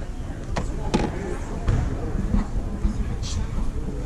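A basketball bounced a few times on a hardwood gym floor, short sharp thuds, the clearest two about half a second apart near the one-second mark, over the chatter of spectators.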